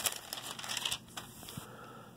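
Thin Bible paper pages rustling and crinkling as they are turned by hand, mostly in the first second, then fading to a faint hiss.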